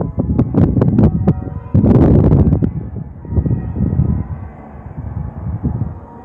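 Cathedral church bells ringing, their tones hanging on and overlapping. A heavy low rumbling runs under them, with a loud rush of noise about two seconds in.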